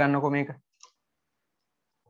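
A man's voice speaking for about the first half second, then near silence with one faint short click a little under a second in.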